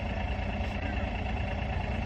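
Steady low rumble in the background.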